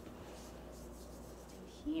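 Faint, soft rubbing of hands pressing and smoothing fondant against a cake, over a low steady hum.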